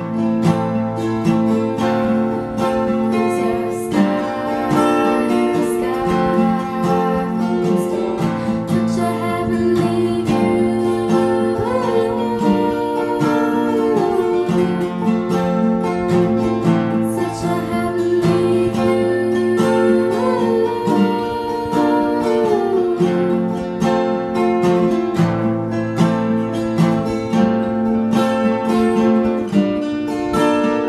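Two acoustic guitars strummed and picked together through a repeating chord progression, the chords changing every few seconds.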